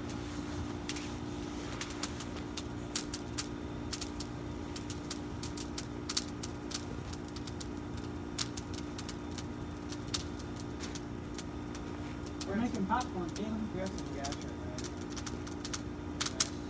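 Campfire of dry grass and brush crackling, with irregular sharp pops all through. A steady low hum runs underneath, and a voice murmurs briefly about thirteen seconds in.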